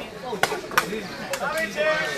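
Sepak takraw ball being kicked in a rally: three sharp strikes within about a second, with spectators' voices around them.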